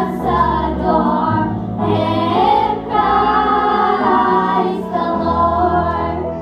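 A group of children singing together into microphones, with held notes over an instrumental accompaniment.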